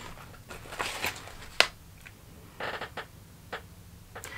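Faint rustling and crinkling of a clear plastic pouch of skincare samples being handled and opened, with a sharp click about one and a half seconds in.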